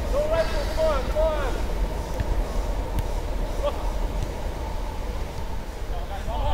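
Footballers shouting to each other across the pitch: a few drawn-out calls in the first second and a half, a fainter one near the middle. A steady low rumble runs underneath.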